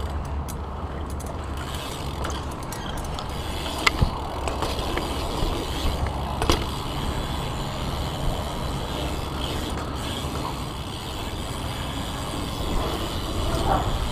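BMX bike rolling over concrete: steady tyre and drivetrain rumble under a handlebar-mounted camera, with a couple of sharp knocks from the bike about four and six and a half seconds in.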